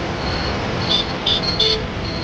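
Fire engine running as it pumps a water jet: a steady low noise, with a few short high-pitched tones about a second in and again near the end.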